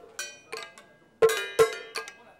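A percussion rhythm being beaten out as a demonstration: five sharp struck hits with a short ringing, bell-like tone, two softer ones and then a quicker group of three louder ones.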